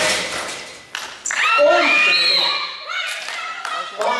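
A basketball thuds against the rim at the start, and about a second in there is a sharp knock of the ball on the hard gym floor. Then players shout loudly for about two seconds.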